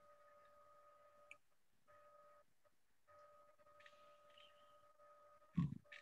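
Near silence over a video call: a faint steady electrical whine drops out briefly a few times, with a short low bump near the end.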